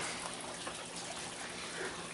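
Prickly pear juice trickling steadily and softly out of a wooden basket fruit press.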